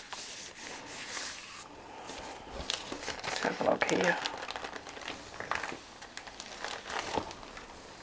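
Thin paper crinkling under a hand rubbing it down over a gel printing plate, then being peeled off the plate as a print: irregular crackling and rustling with scattered small clicks.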